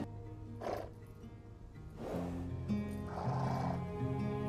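Orchestral background score with held tones, over which a horse snorts three times, the last one longer.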